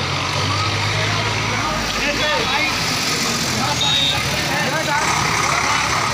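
Busy street traffic: motorcycle engines running and passing, with a low engine hum for the first second or two and a brief high beep about four seconds in.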